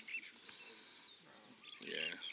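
A man coughs once near the end, over a quiet outdoor background with faint, scattered bird chirps.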